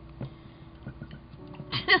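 Quiet room sound with a few faint clicks, then a woman laughing near the end.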